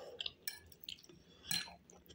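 Quiet chewing of a mouthful of rice, with a few small wet mouth clicks and one louder short noise about one and a half seconds in.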